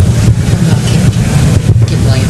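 A loud, steady low rumble or hum with no speech over it.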